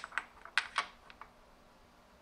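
A quick run of light metal clicks and clinks in the first second or so, then quiet: a metal workpiece being handled and set into the steel jaws of a milling-machine vise.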